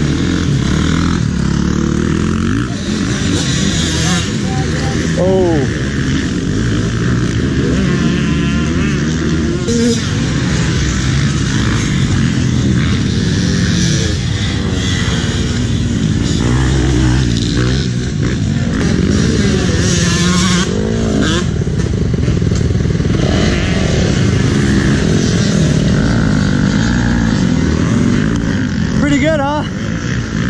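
Several dirt bike engines running nearby, their pitch rising and falling as they are revved, with people's voices in the background.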